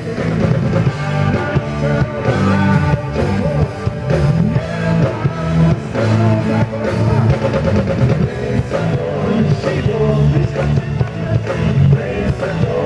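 Live rock band playing: male lead vocals over a drum kit, bass guitar and electric guitar.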